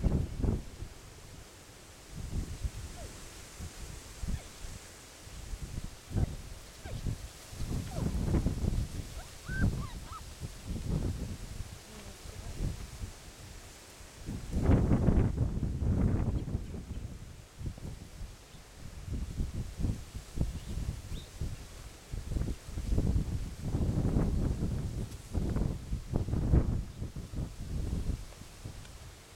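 Wind buffeting the microphone in irregular gusts, loudest about fifteen seconds in and again near the end, with a couple of faint, brief high squeaks about ten seconds in.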